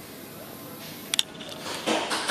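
A short pause in a man's talk: steady faint background hiss, broken by one sharp click a little over a second in.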